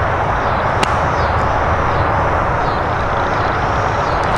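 A single crisp click of a wedge clubface striking a golf ball, about a second in, over a steady rushing background noise.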